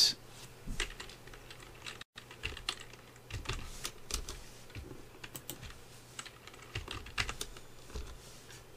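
Computer keyboard keys tapped in short irregular runs as values are typed into a field. The sound cuts out for an instant about two seconds in.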